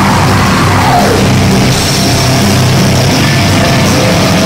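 Live heavy rock band playing loud, with electric guitar, bass guitar and a drum kit with crashing cymbals making a dense, continuous wall of sound.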